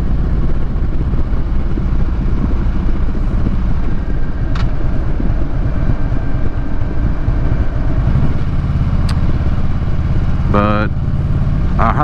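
2015 Harley-Davidson Street Glide Special's Twin Cam V-twin engine running at road speed, with road and wind noise over it. The low engine note becomes steadier about eight seconds in, and two faint ticks are heard along the way.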